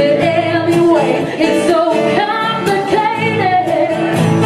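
A woman singing into a microphone with strummed acoustic guitar accompaniment; her voice glides and bends between notes over steady chord strokes.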